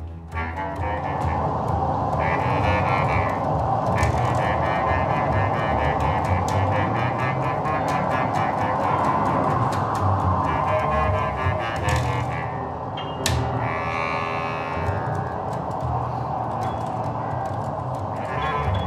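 Freely improvised live ensemble music: double bass, clarinet and piano playing together in a dense, continuous texture, with scattered clicks and brief higher pitched bursts over it.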